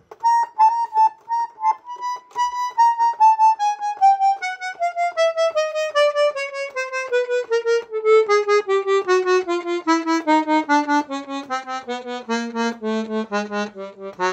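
Three-voice German Royal Standard button accordion (bayan) playing one reed voice at a time: single notes on the right-hand keyboard in a slow descending scale, stepping down note by note from high to low. This is a check of each voice's reeds for tuning and compression on a rebuilt, retuned instrument.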